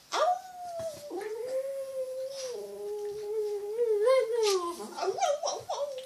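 Dog howling: one long howl that starts high, settles lower and wavers before breaking off about five seconds in, followed by a few short broken howls.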